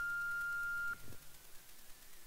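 A single steady electronic beep, one pure high tone held for just under a second and then cut off, of the kind a telephone line or answering machine gives.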